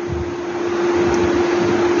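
Steady hiss with a constant hum tone underneath, the background noise of the recording between spoken phrases, growing slightly louder through the pause.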